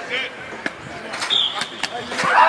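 Football practice field ambience: distant voices and short calls over the field, with a few sharp slaps or knocks in the second half.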